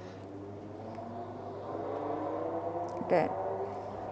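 A person's voice held in one long, low hum that slowly rises in pitch for about three seconds, then a spoken "okay"; a steady electrical hum runs underneath.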